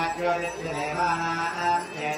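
A male voice chanting Hindu mantras in long held notes that step from pitch to pitch.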